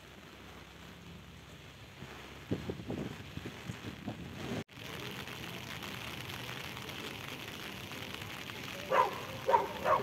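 Steady rain and floodwater noise, with a cluster of knocks and thumps about two and a half seconds in. After an abrupt cut, rain hissing on a flooded street, and near the end three short loud calls.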